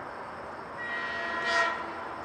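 Horn of an approaching train, sounded once in a short blast of about a second, starting near the middle and loudest just before it ends.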